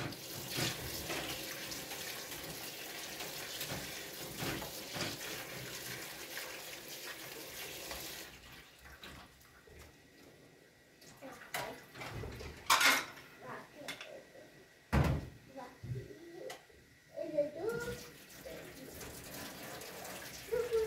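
Kitchen tap running into a stainless steel sink for about eight seconds as meat is rinsed in a plastic colander, then the water stops and a few sharp knocks and clatters follow as the colander and a steel bowl are handled against the sink.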